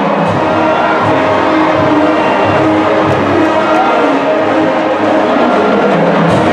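Large marching band playing: brass section holding sustained chords over a steady drumline beat.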